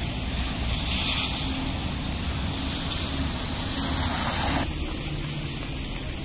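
Road vehicle noise on a wet street: a steady low engine hum under the hiss of tyres on wet tarmac. The hiss swells over the first few seconds and cuts off suddenly about three-quarters of the way in.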